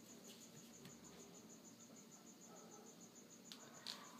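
Near silence, with a faint high-pitched chirp pulsing steadily about seven times a second, and a soft click or two near the end.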